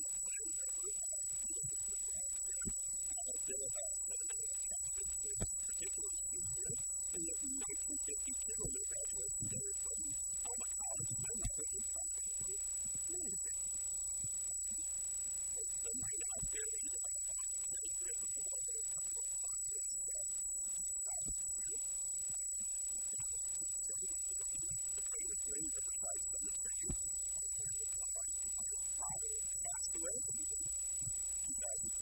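A steady high-pitched electronic whine with a fainter electrical hum beneath it, running unchanged throughout, with faint, muffled speech under them.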